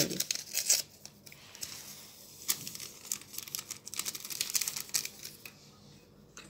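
A small paper sachet of vanilla powder crinkling as it is torn open and emptied. The crackling rustle comes in the first second and again for about three seconds from two and a half seconds in.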